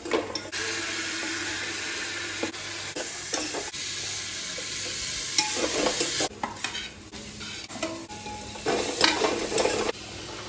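Food sizzling as it fries in an aluminium pot on a gas stove, with a steel ladle stirring and scraping against the pot. The sizzle cuts off about six seconds in, and is followed by scraping and a loud metal clatter about nine seconds in.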